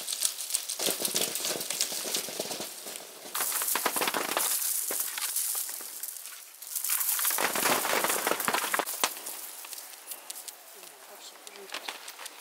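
A long wooden pole beating the branches of a medlar tree. Twigs rattle and fruit drops onto a plastic tarp held beneath, in a few bursts of dense clicking and rustling, each lasting two to three seconds.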